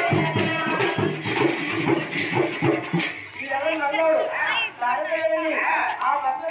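Folk frame drums beaten with sticks in a fast rhythm, with jingling bells over them, stopping about halfway through. A voice follows, speaking or calling out.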